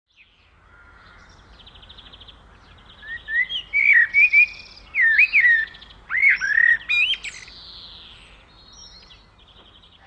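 Birds chirping and singing, with a run of loud, sweeping chirps from about three to seven seconds in and fainter buzzy trills before and after.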